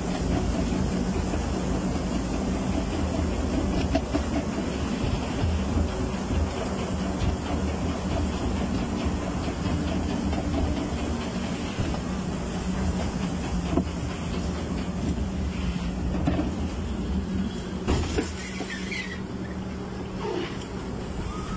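Log flume lift-hill conveyor hauling the boat up the incline: a steady mechanical rumble and hum with rapid clattering. It eases off near the end as the boat reaches the top.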